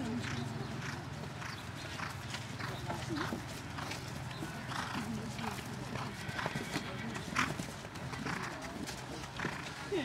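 Hoofbeats of a horse cantering on turf, a run of soft, uneven thuds as it goes round a show-jumping course and over a fence.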